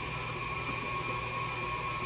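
Electric stand mixer running at a steady speed, beating muffin batter: a steady motor whine over a low hum.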